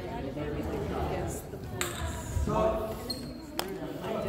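Spectators talking in a large gym, with a basketball bouncing on the hardwood court. There is a sharp knock about three and a half seconds in, just after a short high squeak.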